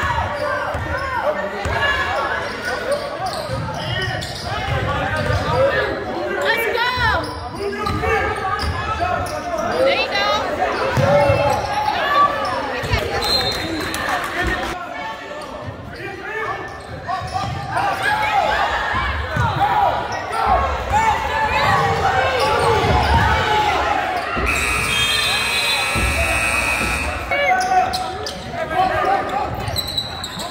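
A basketball being dribbled on a hardwood gym floor during play, with voices of players and spectators echoing in the gym. A steady high tone lasts about three seconds near the end.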